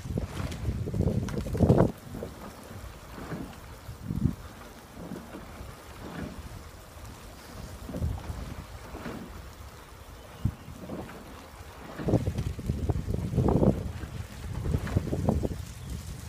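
Wind buffeting the microphone in gusts, loudest in the first two seconds and again from about twelve seconds in, over a lower steady rush of wind.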